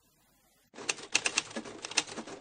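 Typewriter sound effect: a quick run of sharp key clacks over a light hiss, several a second, starting under a second in.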